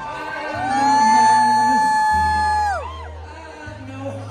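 Rock band playing live in a large hall: over a steady bass, a long high note slides up, holds for about two seconds and falls away, with crowd noise behind it.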